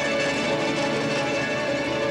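Live band playing instrumental music: plucked-string lead over keyboards, drums and percussion, all sounding together.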